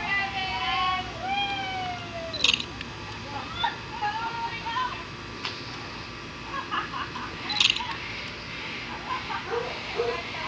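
Voices of a small group calling out and chattering, with no clear words, over a steady outdoor background. Two sharp clicks about five seconds apart are the loudest sounds.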